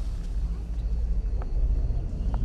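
A low, steady rumbling drone that grows slowly louder.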